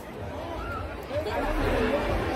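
Background chatter of a gathered crowd: several people talking at once, no single voice standing out.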